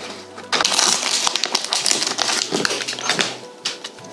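Foil wrapper of a Pokémon trading card booster pack crinkling and tearing as it is ripped open by hand: a dense run of crackles starting about half a second in and lasting about three seconds.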